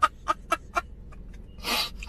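A man laughing hard: a quick run of 'ha-ha' bursts at about four a second that trails off, then a sharp breath in near the end.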